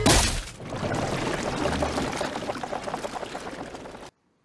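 Cartoon crash sound effect from a harpoon-gun shot at a boat: a loud hit at the start, then a long rushing noise with scattered crackles that slowly fades.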